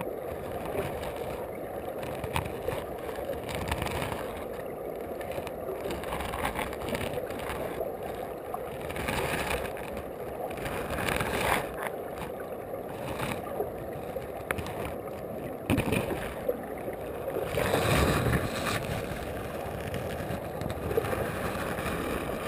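River current heard from underwater through a waterproof camera housing: a steady, muffled rushing and gurgling, dull with little treble, with scattered light knocks and clicks. The water noise swells briefly about three-quarters of the way through.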